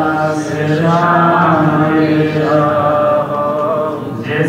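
A man's voice chanting Gurbani in a slow, melodic recitation, holding long notes that bend gently in pitch.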